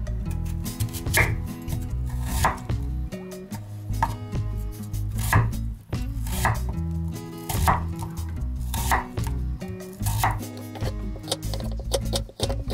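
Kitchen knife chopping a Korean radish into chunks on a wooden cutting board, each cut ending in a knock on the board, about nine chops evenly spaced a little over a second apart.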